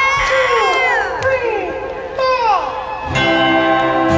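Concert crowd cheering, with repeated high, falling whoops. About three seconds in the band comes in with a steady, sustained chord.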